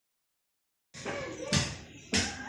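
Dead silence for about the first second, then low handling noise and a single sharp knock about a second and a half in.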